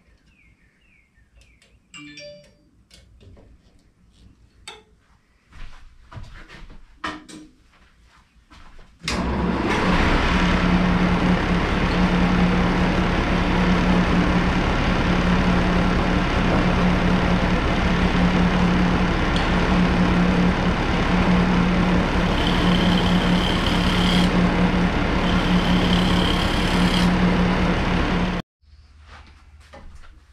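Shopsmith lathe motor running steadily with a strong low hum. It starts suddenly about nine seconds in, after some faint clicks and knocks, and cuts off abruptly near the end.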